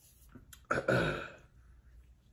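A man clearing his throat once, a short harsh burst a little under a second in.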